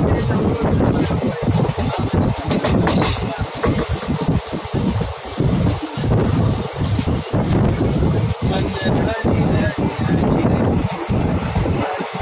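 Wind buffeting the microphone of a phone held out of a moving train, over the train's running noise: a loud, gusty low rumble that keeps cutting out and coming back.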